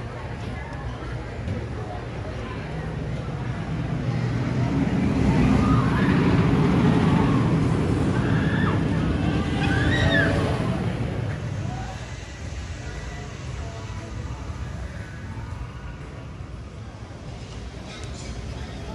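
Wooden roller coaster train rolling past on its track, a low rumble that builds for several seconds and fades away about eleven and a half seconds in, with riders' screams near the loudest part.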